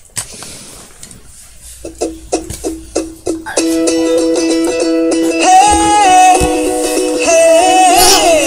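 Recorded song played over a laptop's speakers. A single click comes first. About two seconds in, a few separate plucked notes sound, and at about three and a half seconds the full track comes in, much louder, with held notes.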